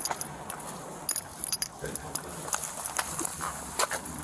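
Metal keys jingling in an irregular rhythm with the footsteps of a walking police officer, picked up close on a body-worn camera.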